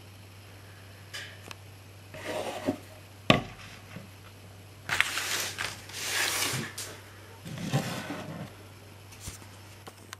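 Handling noise as the disc cases and chipboard box are moved about and set down: a sharp knock about a third of the way in, then a longer stretch of rubbing and scuffing around the middle.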